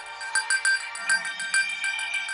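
Electronic jingle of a TV programme bumper: short high notes repeated quickly and evenly, about six a second, over a held tone, with a lower part coming in about halfway.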